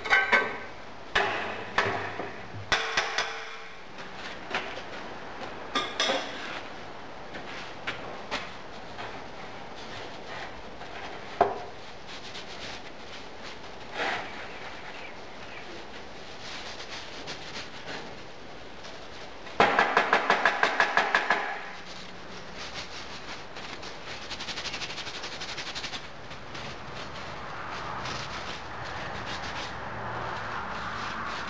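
A sand mould being knocked out of a metal moulding box over a steel bin: a string of knocks and thumps over the first several seconds, scattered knocks after that, and a quick run of about eight sharp knocks lasting two seconds about two-thirds of the way through, with sand crumbling and rubbing in between.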